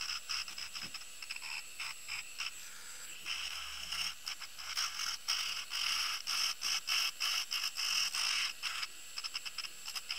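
Tacklife cordless mini rotary tool running with a steady high whine while its bit grinds a resin earring bead back into a sphere. The rasping buzz of the bit comes and goes in short repeated touches and is heavier from about three seconds in until near the end.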